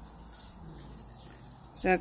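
Quiet background with a faint, steady high-pitched sound and a low hum under it. No distinct event stands out.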